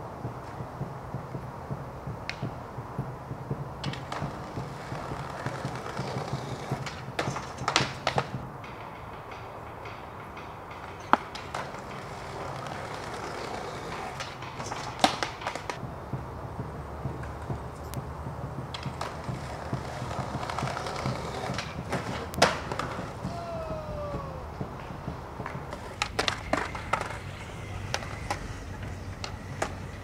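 Skateboard wheels rolling on concrete, broken by several sharp clacks of the board's tail popping and landing.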